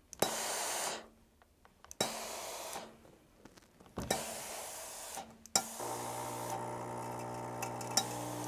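Rowenta steam iron releasing steam onto a quilt block on a wool pressing mat, in four hissing bursts about two seconds apart, each starting with a click. The last burst is the longest, with a steady buzz under it.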